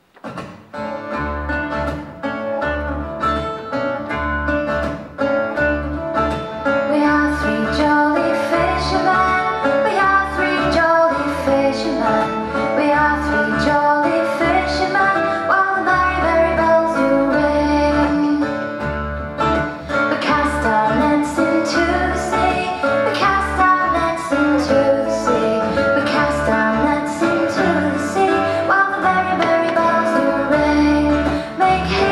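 Live folk band of acoustic guitar, long-necked plucked-string instrument, button accordion and double bass playing a lively tune that starts at once, the double bass pulsing on the beat, with a woman singing over it.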